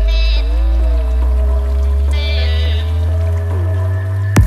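Intro of a hip-hop track with no drums yet: a held deep bass note under sustained synth chords that slide in pitch, with two short high wavering notes, one at the start and one about two seconds in.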